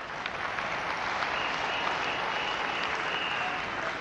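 An audience applauding, swelling over the first second and then holding steady.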